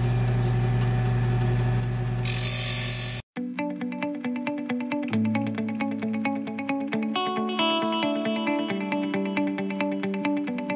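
Wood lathe running steadily at about 1800 rpm, with a gouge cutting into the spinning wood as a hiss for about a second. About three seconds in the sound cuts off abruptly and plucked guitar music takes over for the rest.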